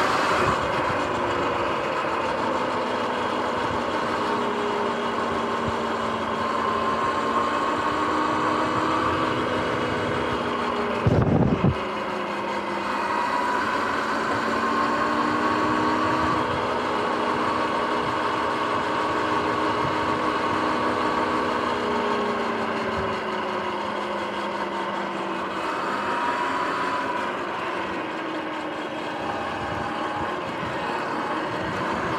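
Sur-Ron X electric dirt bike under way: a steady motor and drive whine whose pitch drifts slowly up and down with speed, over a constant hiss of tyre and wind noise. A brief loud low rumble about eleven seconds in.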